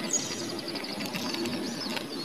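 A small bird singing: a sharp high chirp, then a quick run of short repeated high notes for about a second, with a few more notes later, over steady low background noise.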